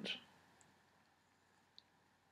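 Near silence: room tone, with the tail of a spoken word at the start and one faint, short click near the end.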